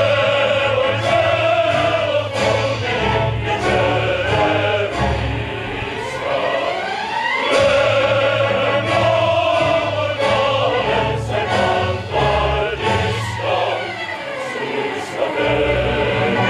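Opera chorus singing in long held notes.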